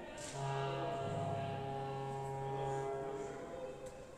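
Orchestra holding a sustained low chord, with a deeper bass note joining about a second in; the chord dies away near the end.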